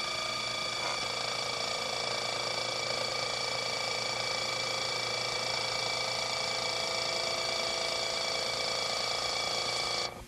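AutoVac electric vacuum pump running steadily with a constant whine as it pulls vacuum on a bagged foam wing. It cuts off suddenly at the end, when its vacuum switch reaches the set point of about 19 inches.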